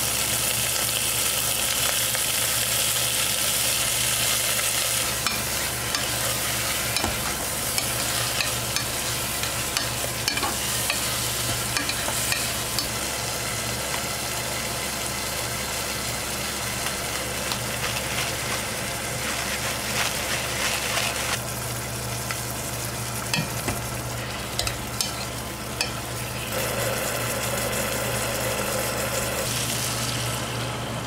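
Chicken pieces sizzling as they fry with garlic in oil in a nonstick pot, steady throughout, with short scraping ticks and taps as they are stirred and turned.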